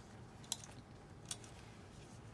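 Two short, light clicks about a second apart from fingers working the metal six-ring binder mechanism of a personal-size planner.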